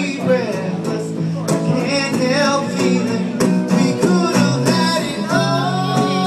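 Live music with strummed guitar and a melody line that bends in pitch over a steady low bass, moving into long held notes near the end.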